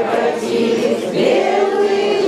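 A choir of several voices singing together in long held notes, with a rise in pitch about a second in.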